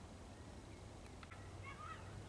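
Faint outdoor ambience with a low steady rumble and a few short bird chirps near the end.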